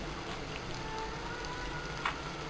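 Onions and spices sizzling steadily in hot oil in a pressure cooker pot.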